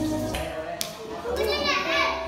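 Children's voices and playing indoors, with music underneath; a child's high-pitched voice rises and bends near the end.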